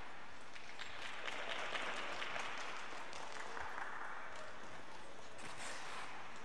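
Audience applauding, starting about half a second in and fading out near the end.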